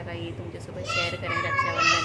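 Speech: a woman talking, joined about a second in by a higher-pitched child's voice, which is the loudest part.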